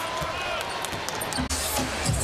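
A basketball being dribbled on a hardwood court over arena crowd noise. About one and a half seconds in, the sound breaks off abruptly into a different stretch of crowd sound.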